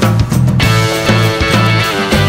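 Electric blues band playing an instrumental passage: a stepping bass line under regular drum hits, with guitar.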